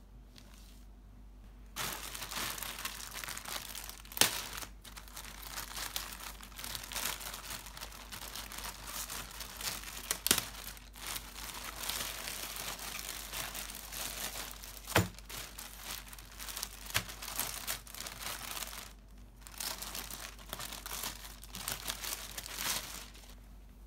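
Plastic mailer bag and the clear plastic bag inside it crinkling and rustling as they are opened and handled, starting about two seconds in. A few sharp crackles stand out, and there is a brief lull near the end.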